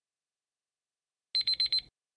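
Countdown timer alarm: four rapid high-pitched beeps in under half a second, starting about a second and a half in, signalling that time is up.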